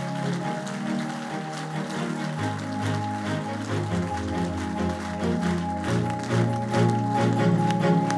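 Music with held chords and a shifting bass line, over scattered audience clapping.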